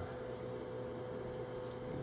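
A faint, steady electrical tone over low hiss from radio test equipment on the bench.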